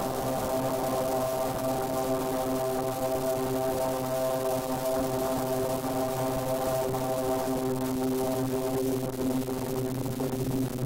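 Background music: a steady, unbroken drone on one held low pitch with many overtones.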